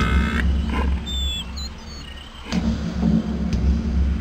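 Logo sound effect: a deep rumbling bass under the tail of a drawn-out roar that stops about half a second in. A few short high chirps follow, then a deep boom about two and a half seconds in, with the rumble swelling again.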